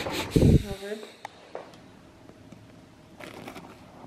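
A kitchen knife cutting into the crisp crust of a freshly baked bundt cake, with faint crunchy scraping and small clicks around three seconds in. A dull thump about half a second in and a short vocal sound just after it are the loudest things.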